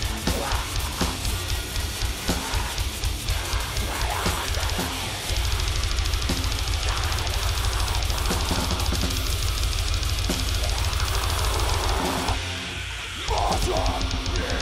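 Extreme metal band playing live: very fast drumming under distorted guitars and bass, with vocals into a microphone. About a second before the end the low end drops out briefly, then the full band comes back in.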